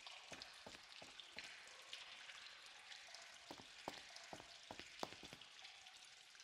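Near silence: a faint steady hiss with scattered soft clicks and crackles, the clearest about four and five seconds in.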